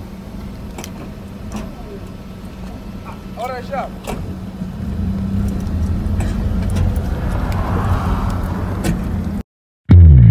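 Road and engine noise inside a moving car: a steady low rumble and hum with a few light clicks. It grows louder in the second half and cuts off abruptly about half a second before the end.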